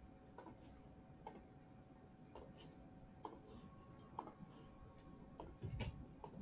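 Near-silent room tone with faint, evenly spaced ticks about once a second, and a soft low thump near the end.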